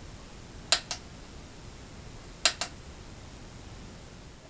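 The small plastic function button on a battery-operated mood lamp's display base pressed twice, about a second and a half apart. Each press is a quick pair of clicks, press and release, over faint room tone.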